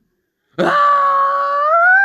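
A long, high-pitched howl starts suddenly about half a second in, holding one pitch and rising slightly near the end.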